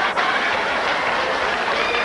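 Live audience applauding and laughing: a steady, loud wash of clapping and crowd noise with no words.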